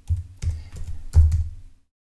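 Computer keyboard being typed on: about five or six keystrokes in under two seconds, each with a low thump, stopping near the end.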